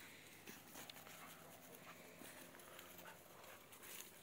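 Faint sounds of two puppies playing together on dry straw-covered ground: light scuffling with scattered small clicks and rustles, and little dog noises.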